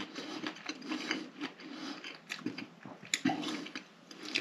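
A person chewing food close to the microphone, with irregular wet mouth clicks and smacks throughout and a louder click about three seconds in.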